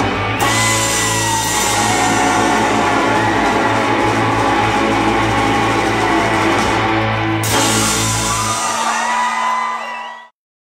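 Live instrumental surf rock band playing: electric guitars, bass and drum kit, with bending guitar notes above the band. The music fades out near the end.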